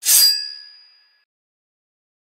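A single bright metallic ding, a sound-effect chime that strikes sharply and rings out, fading away within about a second.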